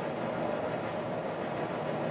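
Steady room noise: an even, constant hiss with no distinct events.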